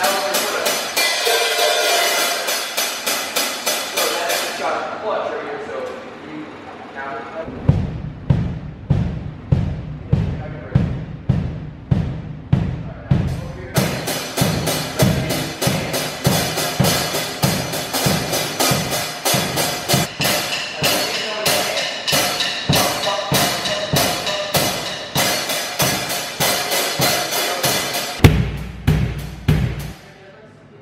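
Acoustic drum kit played in a simple steady practice beat by a beginner drummer. A cymbal or hi-hat is struck about four times a second, and after several seconds the bass drum joins on a regular pulse. Near the end comes a single louder, ringing low hit.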